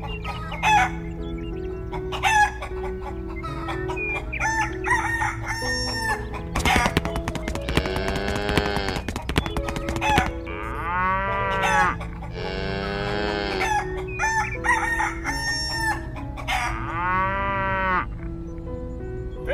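Chickens: hens clucking in short calls throughout, and a rooster crowing several times from about seven seconds in. Steady background music runs underneath.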